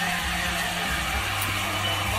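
Background music with held low bass notes.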